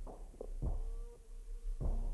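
Quiet background music with a slow, steady low drum beat, a little under two beats a second, and one held note in the middle.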